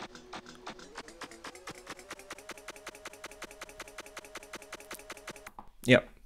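A DIY Daisy Seed sampler/looper replaying a very short loop, stuttering about ten times a second into a buzzy pitched tone. Its pitch is raised, stepping up about two and a half seconds in, and the loop stops about five and a half seconds in.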